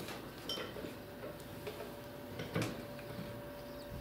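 A few light metallic clicks and taps as nuts are tightened on a grain dryer's electric gear motor, over a faint steady hum.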